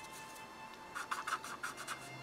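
Paper blending stump rubbed over coloured-pencil shading on paper, a faint run of quick, short scratchy strokes in the second half.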